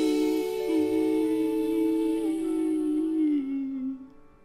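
A man's and a woman's voice holding a long final note of a pop ballad duet in harmony, the lower line dipping briefly about half a second in and sliding down just before the note ends.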